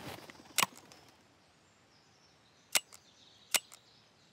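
Three shotgun shots at a duck in flight: one about half a second in, then two more near the end, less than a second apart.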